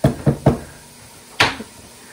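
A spatula knocking against a stainless steel mixing bowl while the last cake batter is scraped out, three quick knocks close together and then one more about a second later with a short ring.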